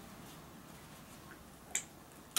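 A single short, sharp click near the end, over faint steady hiss.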